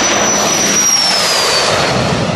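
Aerostar jet's twin Pratt & Whitney PW615F turbofans at takeoff power as the plane lifts off and passes: a loud rush with a high whine that drops in pitch just after halfway as the jet goes by.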